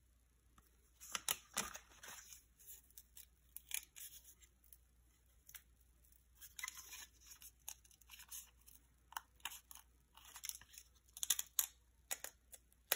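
Wax-paper pack wrapper and old cardboard baseball cards, with a slab of 50-year-old bubble gum stuck on, being handled and peeled apart: irregular crackling and tearing in short bursts. The loudest bursts come about a second in and again near the end.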